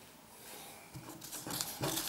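Newspaper pages rustling and crinkling as they are handled, faint at first and growing louder after about a second.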